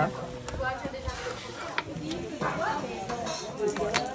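Background voices talking softly, with a few light clicks.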